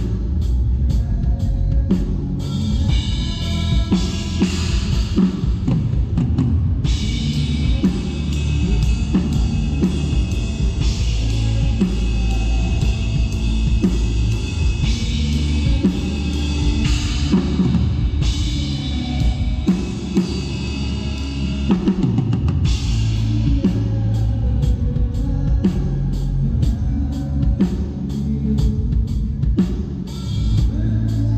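Acoustic drum kit played through a song: a steady bass drum and snare beat, with cymbals crashing and ringing in long stretches from about seven seconds in.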